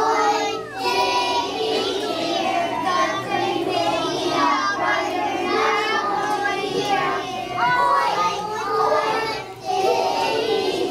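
A group of young children singing a song together, many voices in unison with held, wavering notes.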